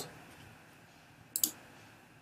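A single short, sharp computer mouse click about one and a half seconds in, heard against faint room tone.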